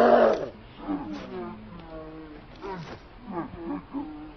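A chimpanzee calling: a loud call right at the start, then a string of quieter rising-and-falling hoots.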